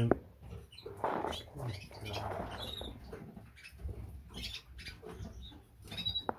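Caged birds shuffling and pecking in a bird room: irregular scratching and clicking on perches and cage wire, with a few short, faint chirps.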